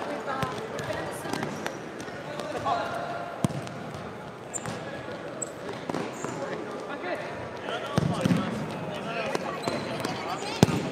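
Futsal game sounds in a sports hall: a ball kicked and bouncing on the hard court in several sharp knocks, the sharpest about three and a half seconds in. Players' shouts and chatter echo through the hall.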